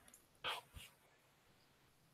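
Near silence on the call line, with one brief faint noise about half a second in.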